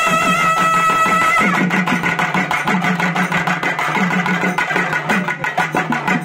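Nadaswaram folk ensemble. Two nadaswarams hold a long note that breaks off about a second and a half in, and thavil drumming keeps up a fast, steady beat throughout.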